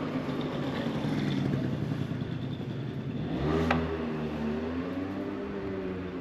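A small motor scooter approaching and passing close by. Its engine note drops in pitch as it goes past a little over halfway through, with a single sharp click at that moment.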